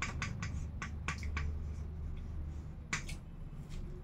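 Chalk tapping and scratching on a chalkboard as letters are written: a quick run of short, sharp taps in the first second and a half, then a single tap about three seconds in.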